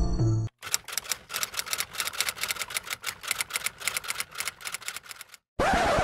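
Typewriter sound effect: rapid, irregular clacking keystrokes for about five seconds, followed near the end by a short burst of noise. It is preceded by the last half second of a musical jingle.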